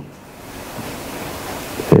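Steady hiss of background noise, with no pitch or rhythm to it. A man's voice begins near the end.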